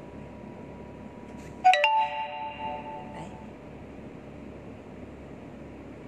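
A single bell-like chime about two seconds in: several clear tones struck together and ringing out over about a second and a half, over a steady background hiss.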